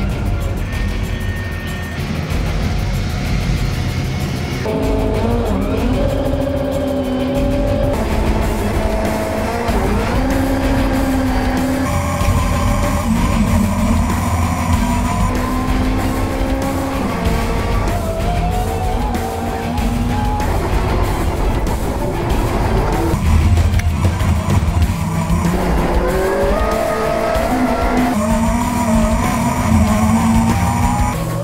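Onboard sound of a Chevrolet Cruze TC1 touring car's turbocharged four-cylinder engine at race pace. The engine revs rise in pitch through the gears and drop back at each shift, several times over, with steady road and tyre noise underneath.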